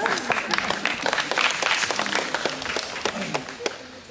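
Audience applauding, with some voices mixed in among the clapping; the clapping thins out near the end.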